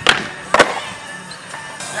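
Skateboard on a concrete ledge during a backside tailslide: two sharp knocks about half a second apart near the start, as the board hits the ledge and comes down, over background music.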